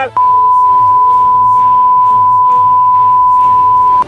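A single loud, steady beep tone, a censor bleep laid over a man's shouting. It starts a moment in and cuts off sharply at the end, with the voice faintly audible beneath.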